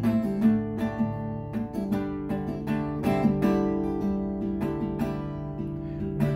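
Acoustic guitar strumming chords, strokes falling a few times a second with the chords ringing between them.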